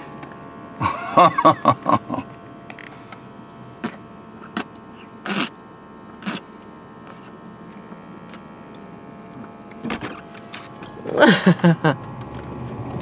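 A very thick protein shake being drunk from a large plastic jug: a few scattered gulps and clicks over a faint steady hum. There is a short muffled vocal sound about a second in and a laugh near the end.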